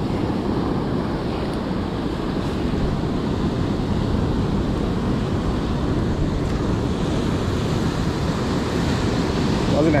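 Ocean surf washing steadily over a rocky reef shore, with wind rumbling on the microphone.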